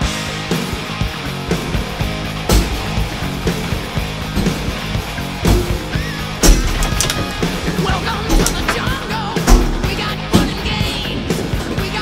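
Music playing throughout, with repeated sharp crashes of objects being smashed. The two loudest crashes come about six and a half and nine and a half seconds in.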